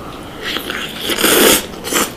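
Close-miked eating: biting into and chewing food, loudest about a second in, with a short burst near the end.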